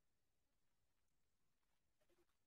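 Near silence: a pause in an online call.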